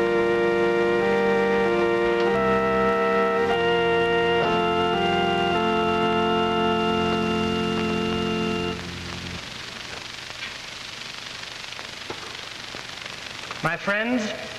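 Organ playing slow held chords, changing every second or so, a church voluntary for vespers. The music ends about two-thirds of the way through, leaving only a steady hiss.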